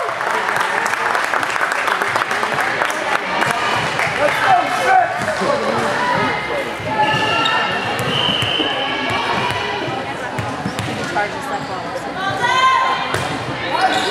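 Indoor volleyball play in a gym: repeated sharp knocks of the ball being struck and bouncing on the wooden court, with players' and spectators' voices calling out, all echoing in the large hall.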